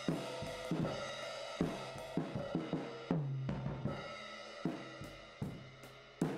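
Recorded drum kit played back from a mix session: kick, snare and cymbals with cymbal wash ringing between the hits. The drums are run through heavy parallel compression with fast attack and fast release, set so they pump.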